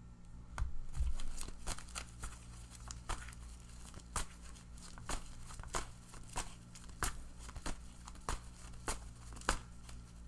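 A deck of tarot cards being shuffled by hand, a short papery snap of the cards about twice a second, starting about half a second in.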